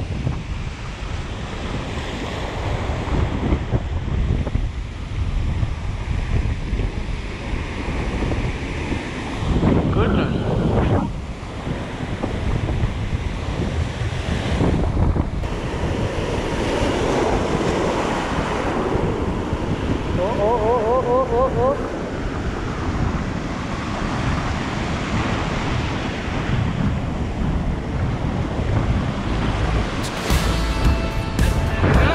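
Surf breaking and washing around a rock ledge, with wind buffeting the microphone in loud surges. A short run of small rising chirps sounds about two-thirds of the way through.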